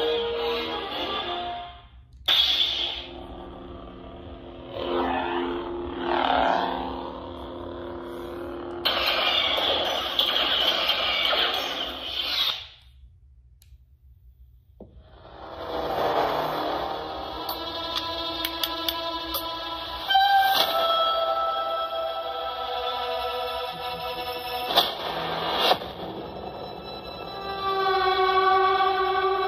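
A Proffie V2 lightsaber sound board playing sound-font audio through the saber's small speaker: music-like tones and effects as the fonts are cycled. It cuts out for about two seconds near the middle, then another font's tones come in, with several sharp clicks in the later part.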